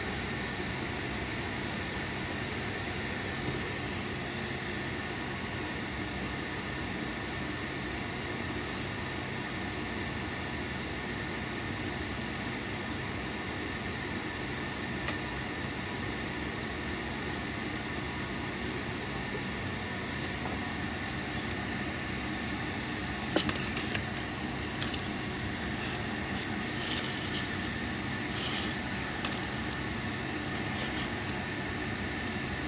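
Steady mechanical hum with a few faint steady tones in it, and a few brief clicks about three-quarters of the way through.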